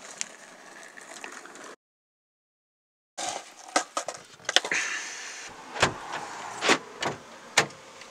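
Car door being worked from outside, starting about three seconds in: a series of sharp clunks and clicks from the handle and latch as the rear door is opened. The door is stiff in the cold and opens only partway.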